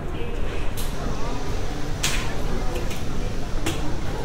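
Airport departures hall ambience: the indistinct chatter of many people over a steady low rumble. Three brief hissy noises come through, the loudest about two seconds in.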